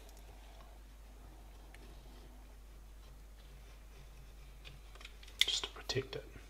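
Quiet room tone, then a quick cluster of sharp clicks and taps in the last second, from hands handling things at the workbench.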